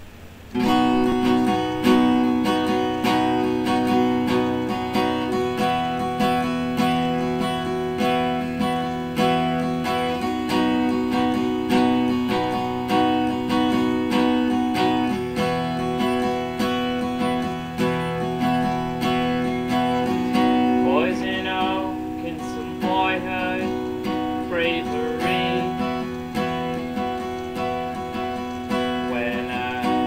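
Acoustic guitar strumming the opening chords of a song, starting about half a second in and carrying on steadily.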